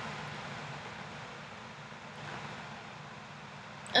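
Steady room tone: an even hiss with a faint low hum underneath, unchanged throughout, with no distinct events.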